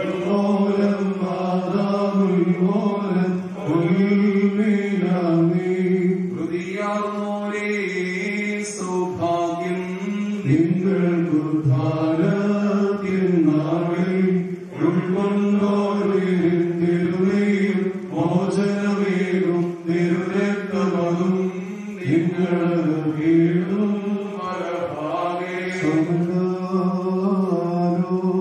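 Male priests chanting a funeral liturgy into a microphone: one continuous, slowly wavering melodic line of men's voices, with short breaks for breath.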